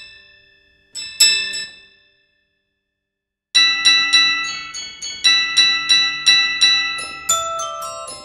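Sampled toy piano with a glockenspiel-like bell tone, played from a keyboard. A few struck notes ring out and die away, then after a silent gap of about a second and a half comes a steady run of bright ringing notes, about three a second.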